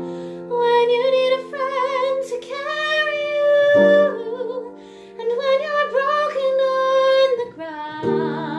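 A woman singing a slow ballad with vibrato, accompanying herself on piano with sustained chords that change about every four seconds.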